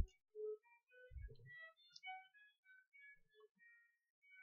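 Almost silent, with a short click at the very start, a faint soft knock just after a second in, and scattered faint brief tones.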